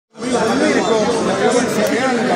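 Speech only: overlapping voices talking in a room, with no clear words standing out.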